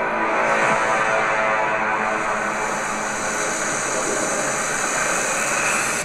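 Movie-trailer sound design: a loud, dense roaring rush with faint held tones inside it, swelling in about the first second, holding steady, then cutting off suddenly at the end.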